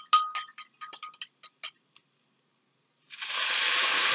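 A cornstarch slurry being stirred briskly in a ceramic bowl, the stirring utensil clinking rapidly against the bowl, several clinks a second, stopping about two seconds in. About three seconds in, a steady sizzle starts as the slurry is poured into the hot frying pan.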